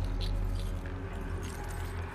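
Dark TV-drama sound design: a low, steady droning score with scattered light metallic clinks and jangles over it.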